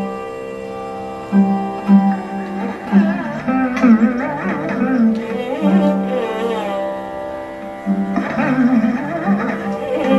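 Carnatic classical music: a chitraveena, a fretless lute played with a slide, plucks notes that glide and waver between pitches, accompanied by a bowed violin over a steady drone.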